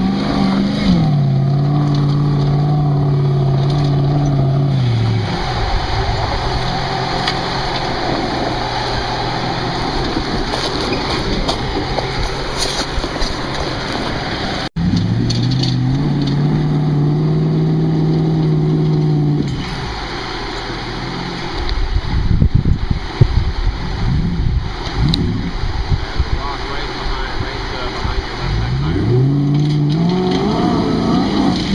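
A lifted 4x4 SUV's engine revving as it crawls up a steep rutted dirt climb. The pitch rises and falls in repeated pulls, with rough low rumbling in between.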